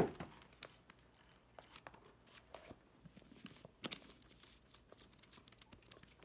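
Bible pages being leafed through: scattered soft paper rustles and crinkles, with a sharper one right at the start and another about four seconds in.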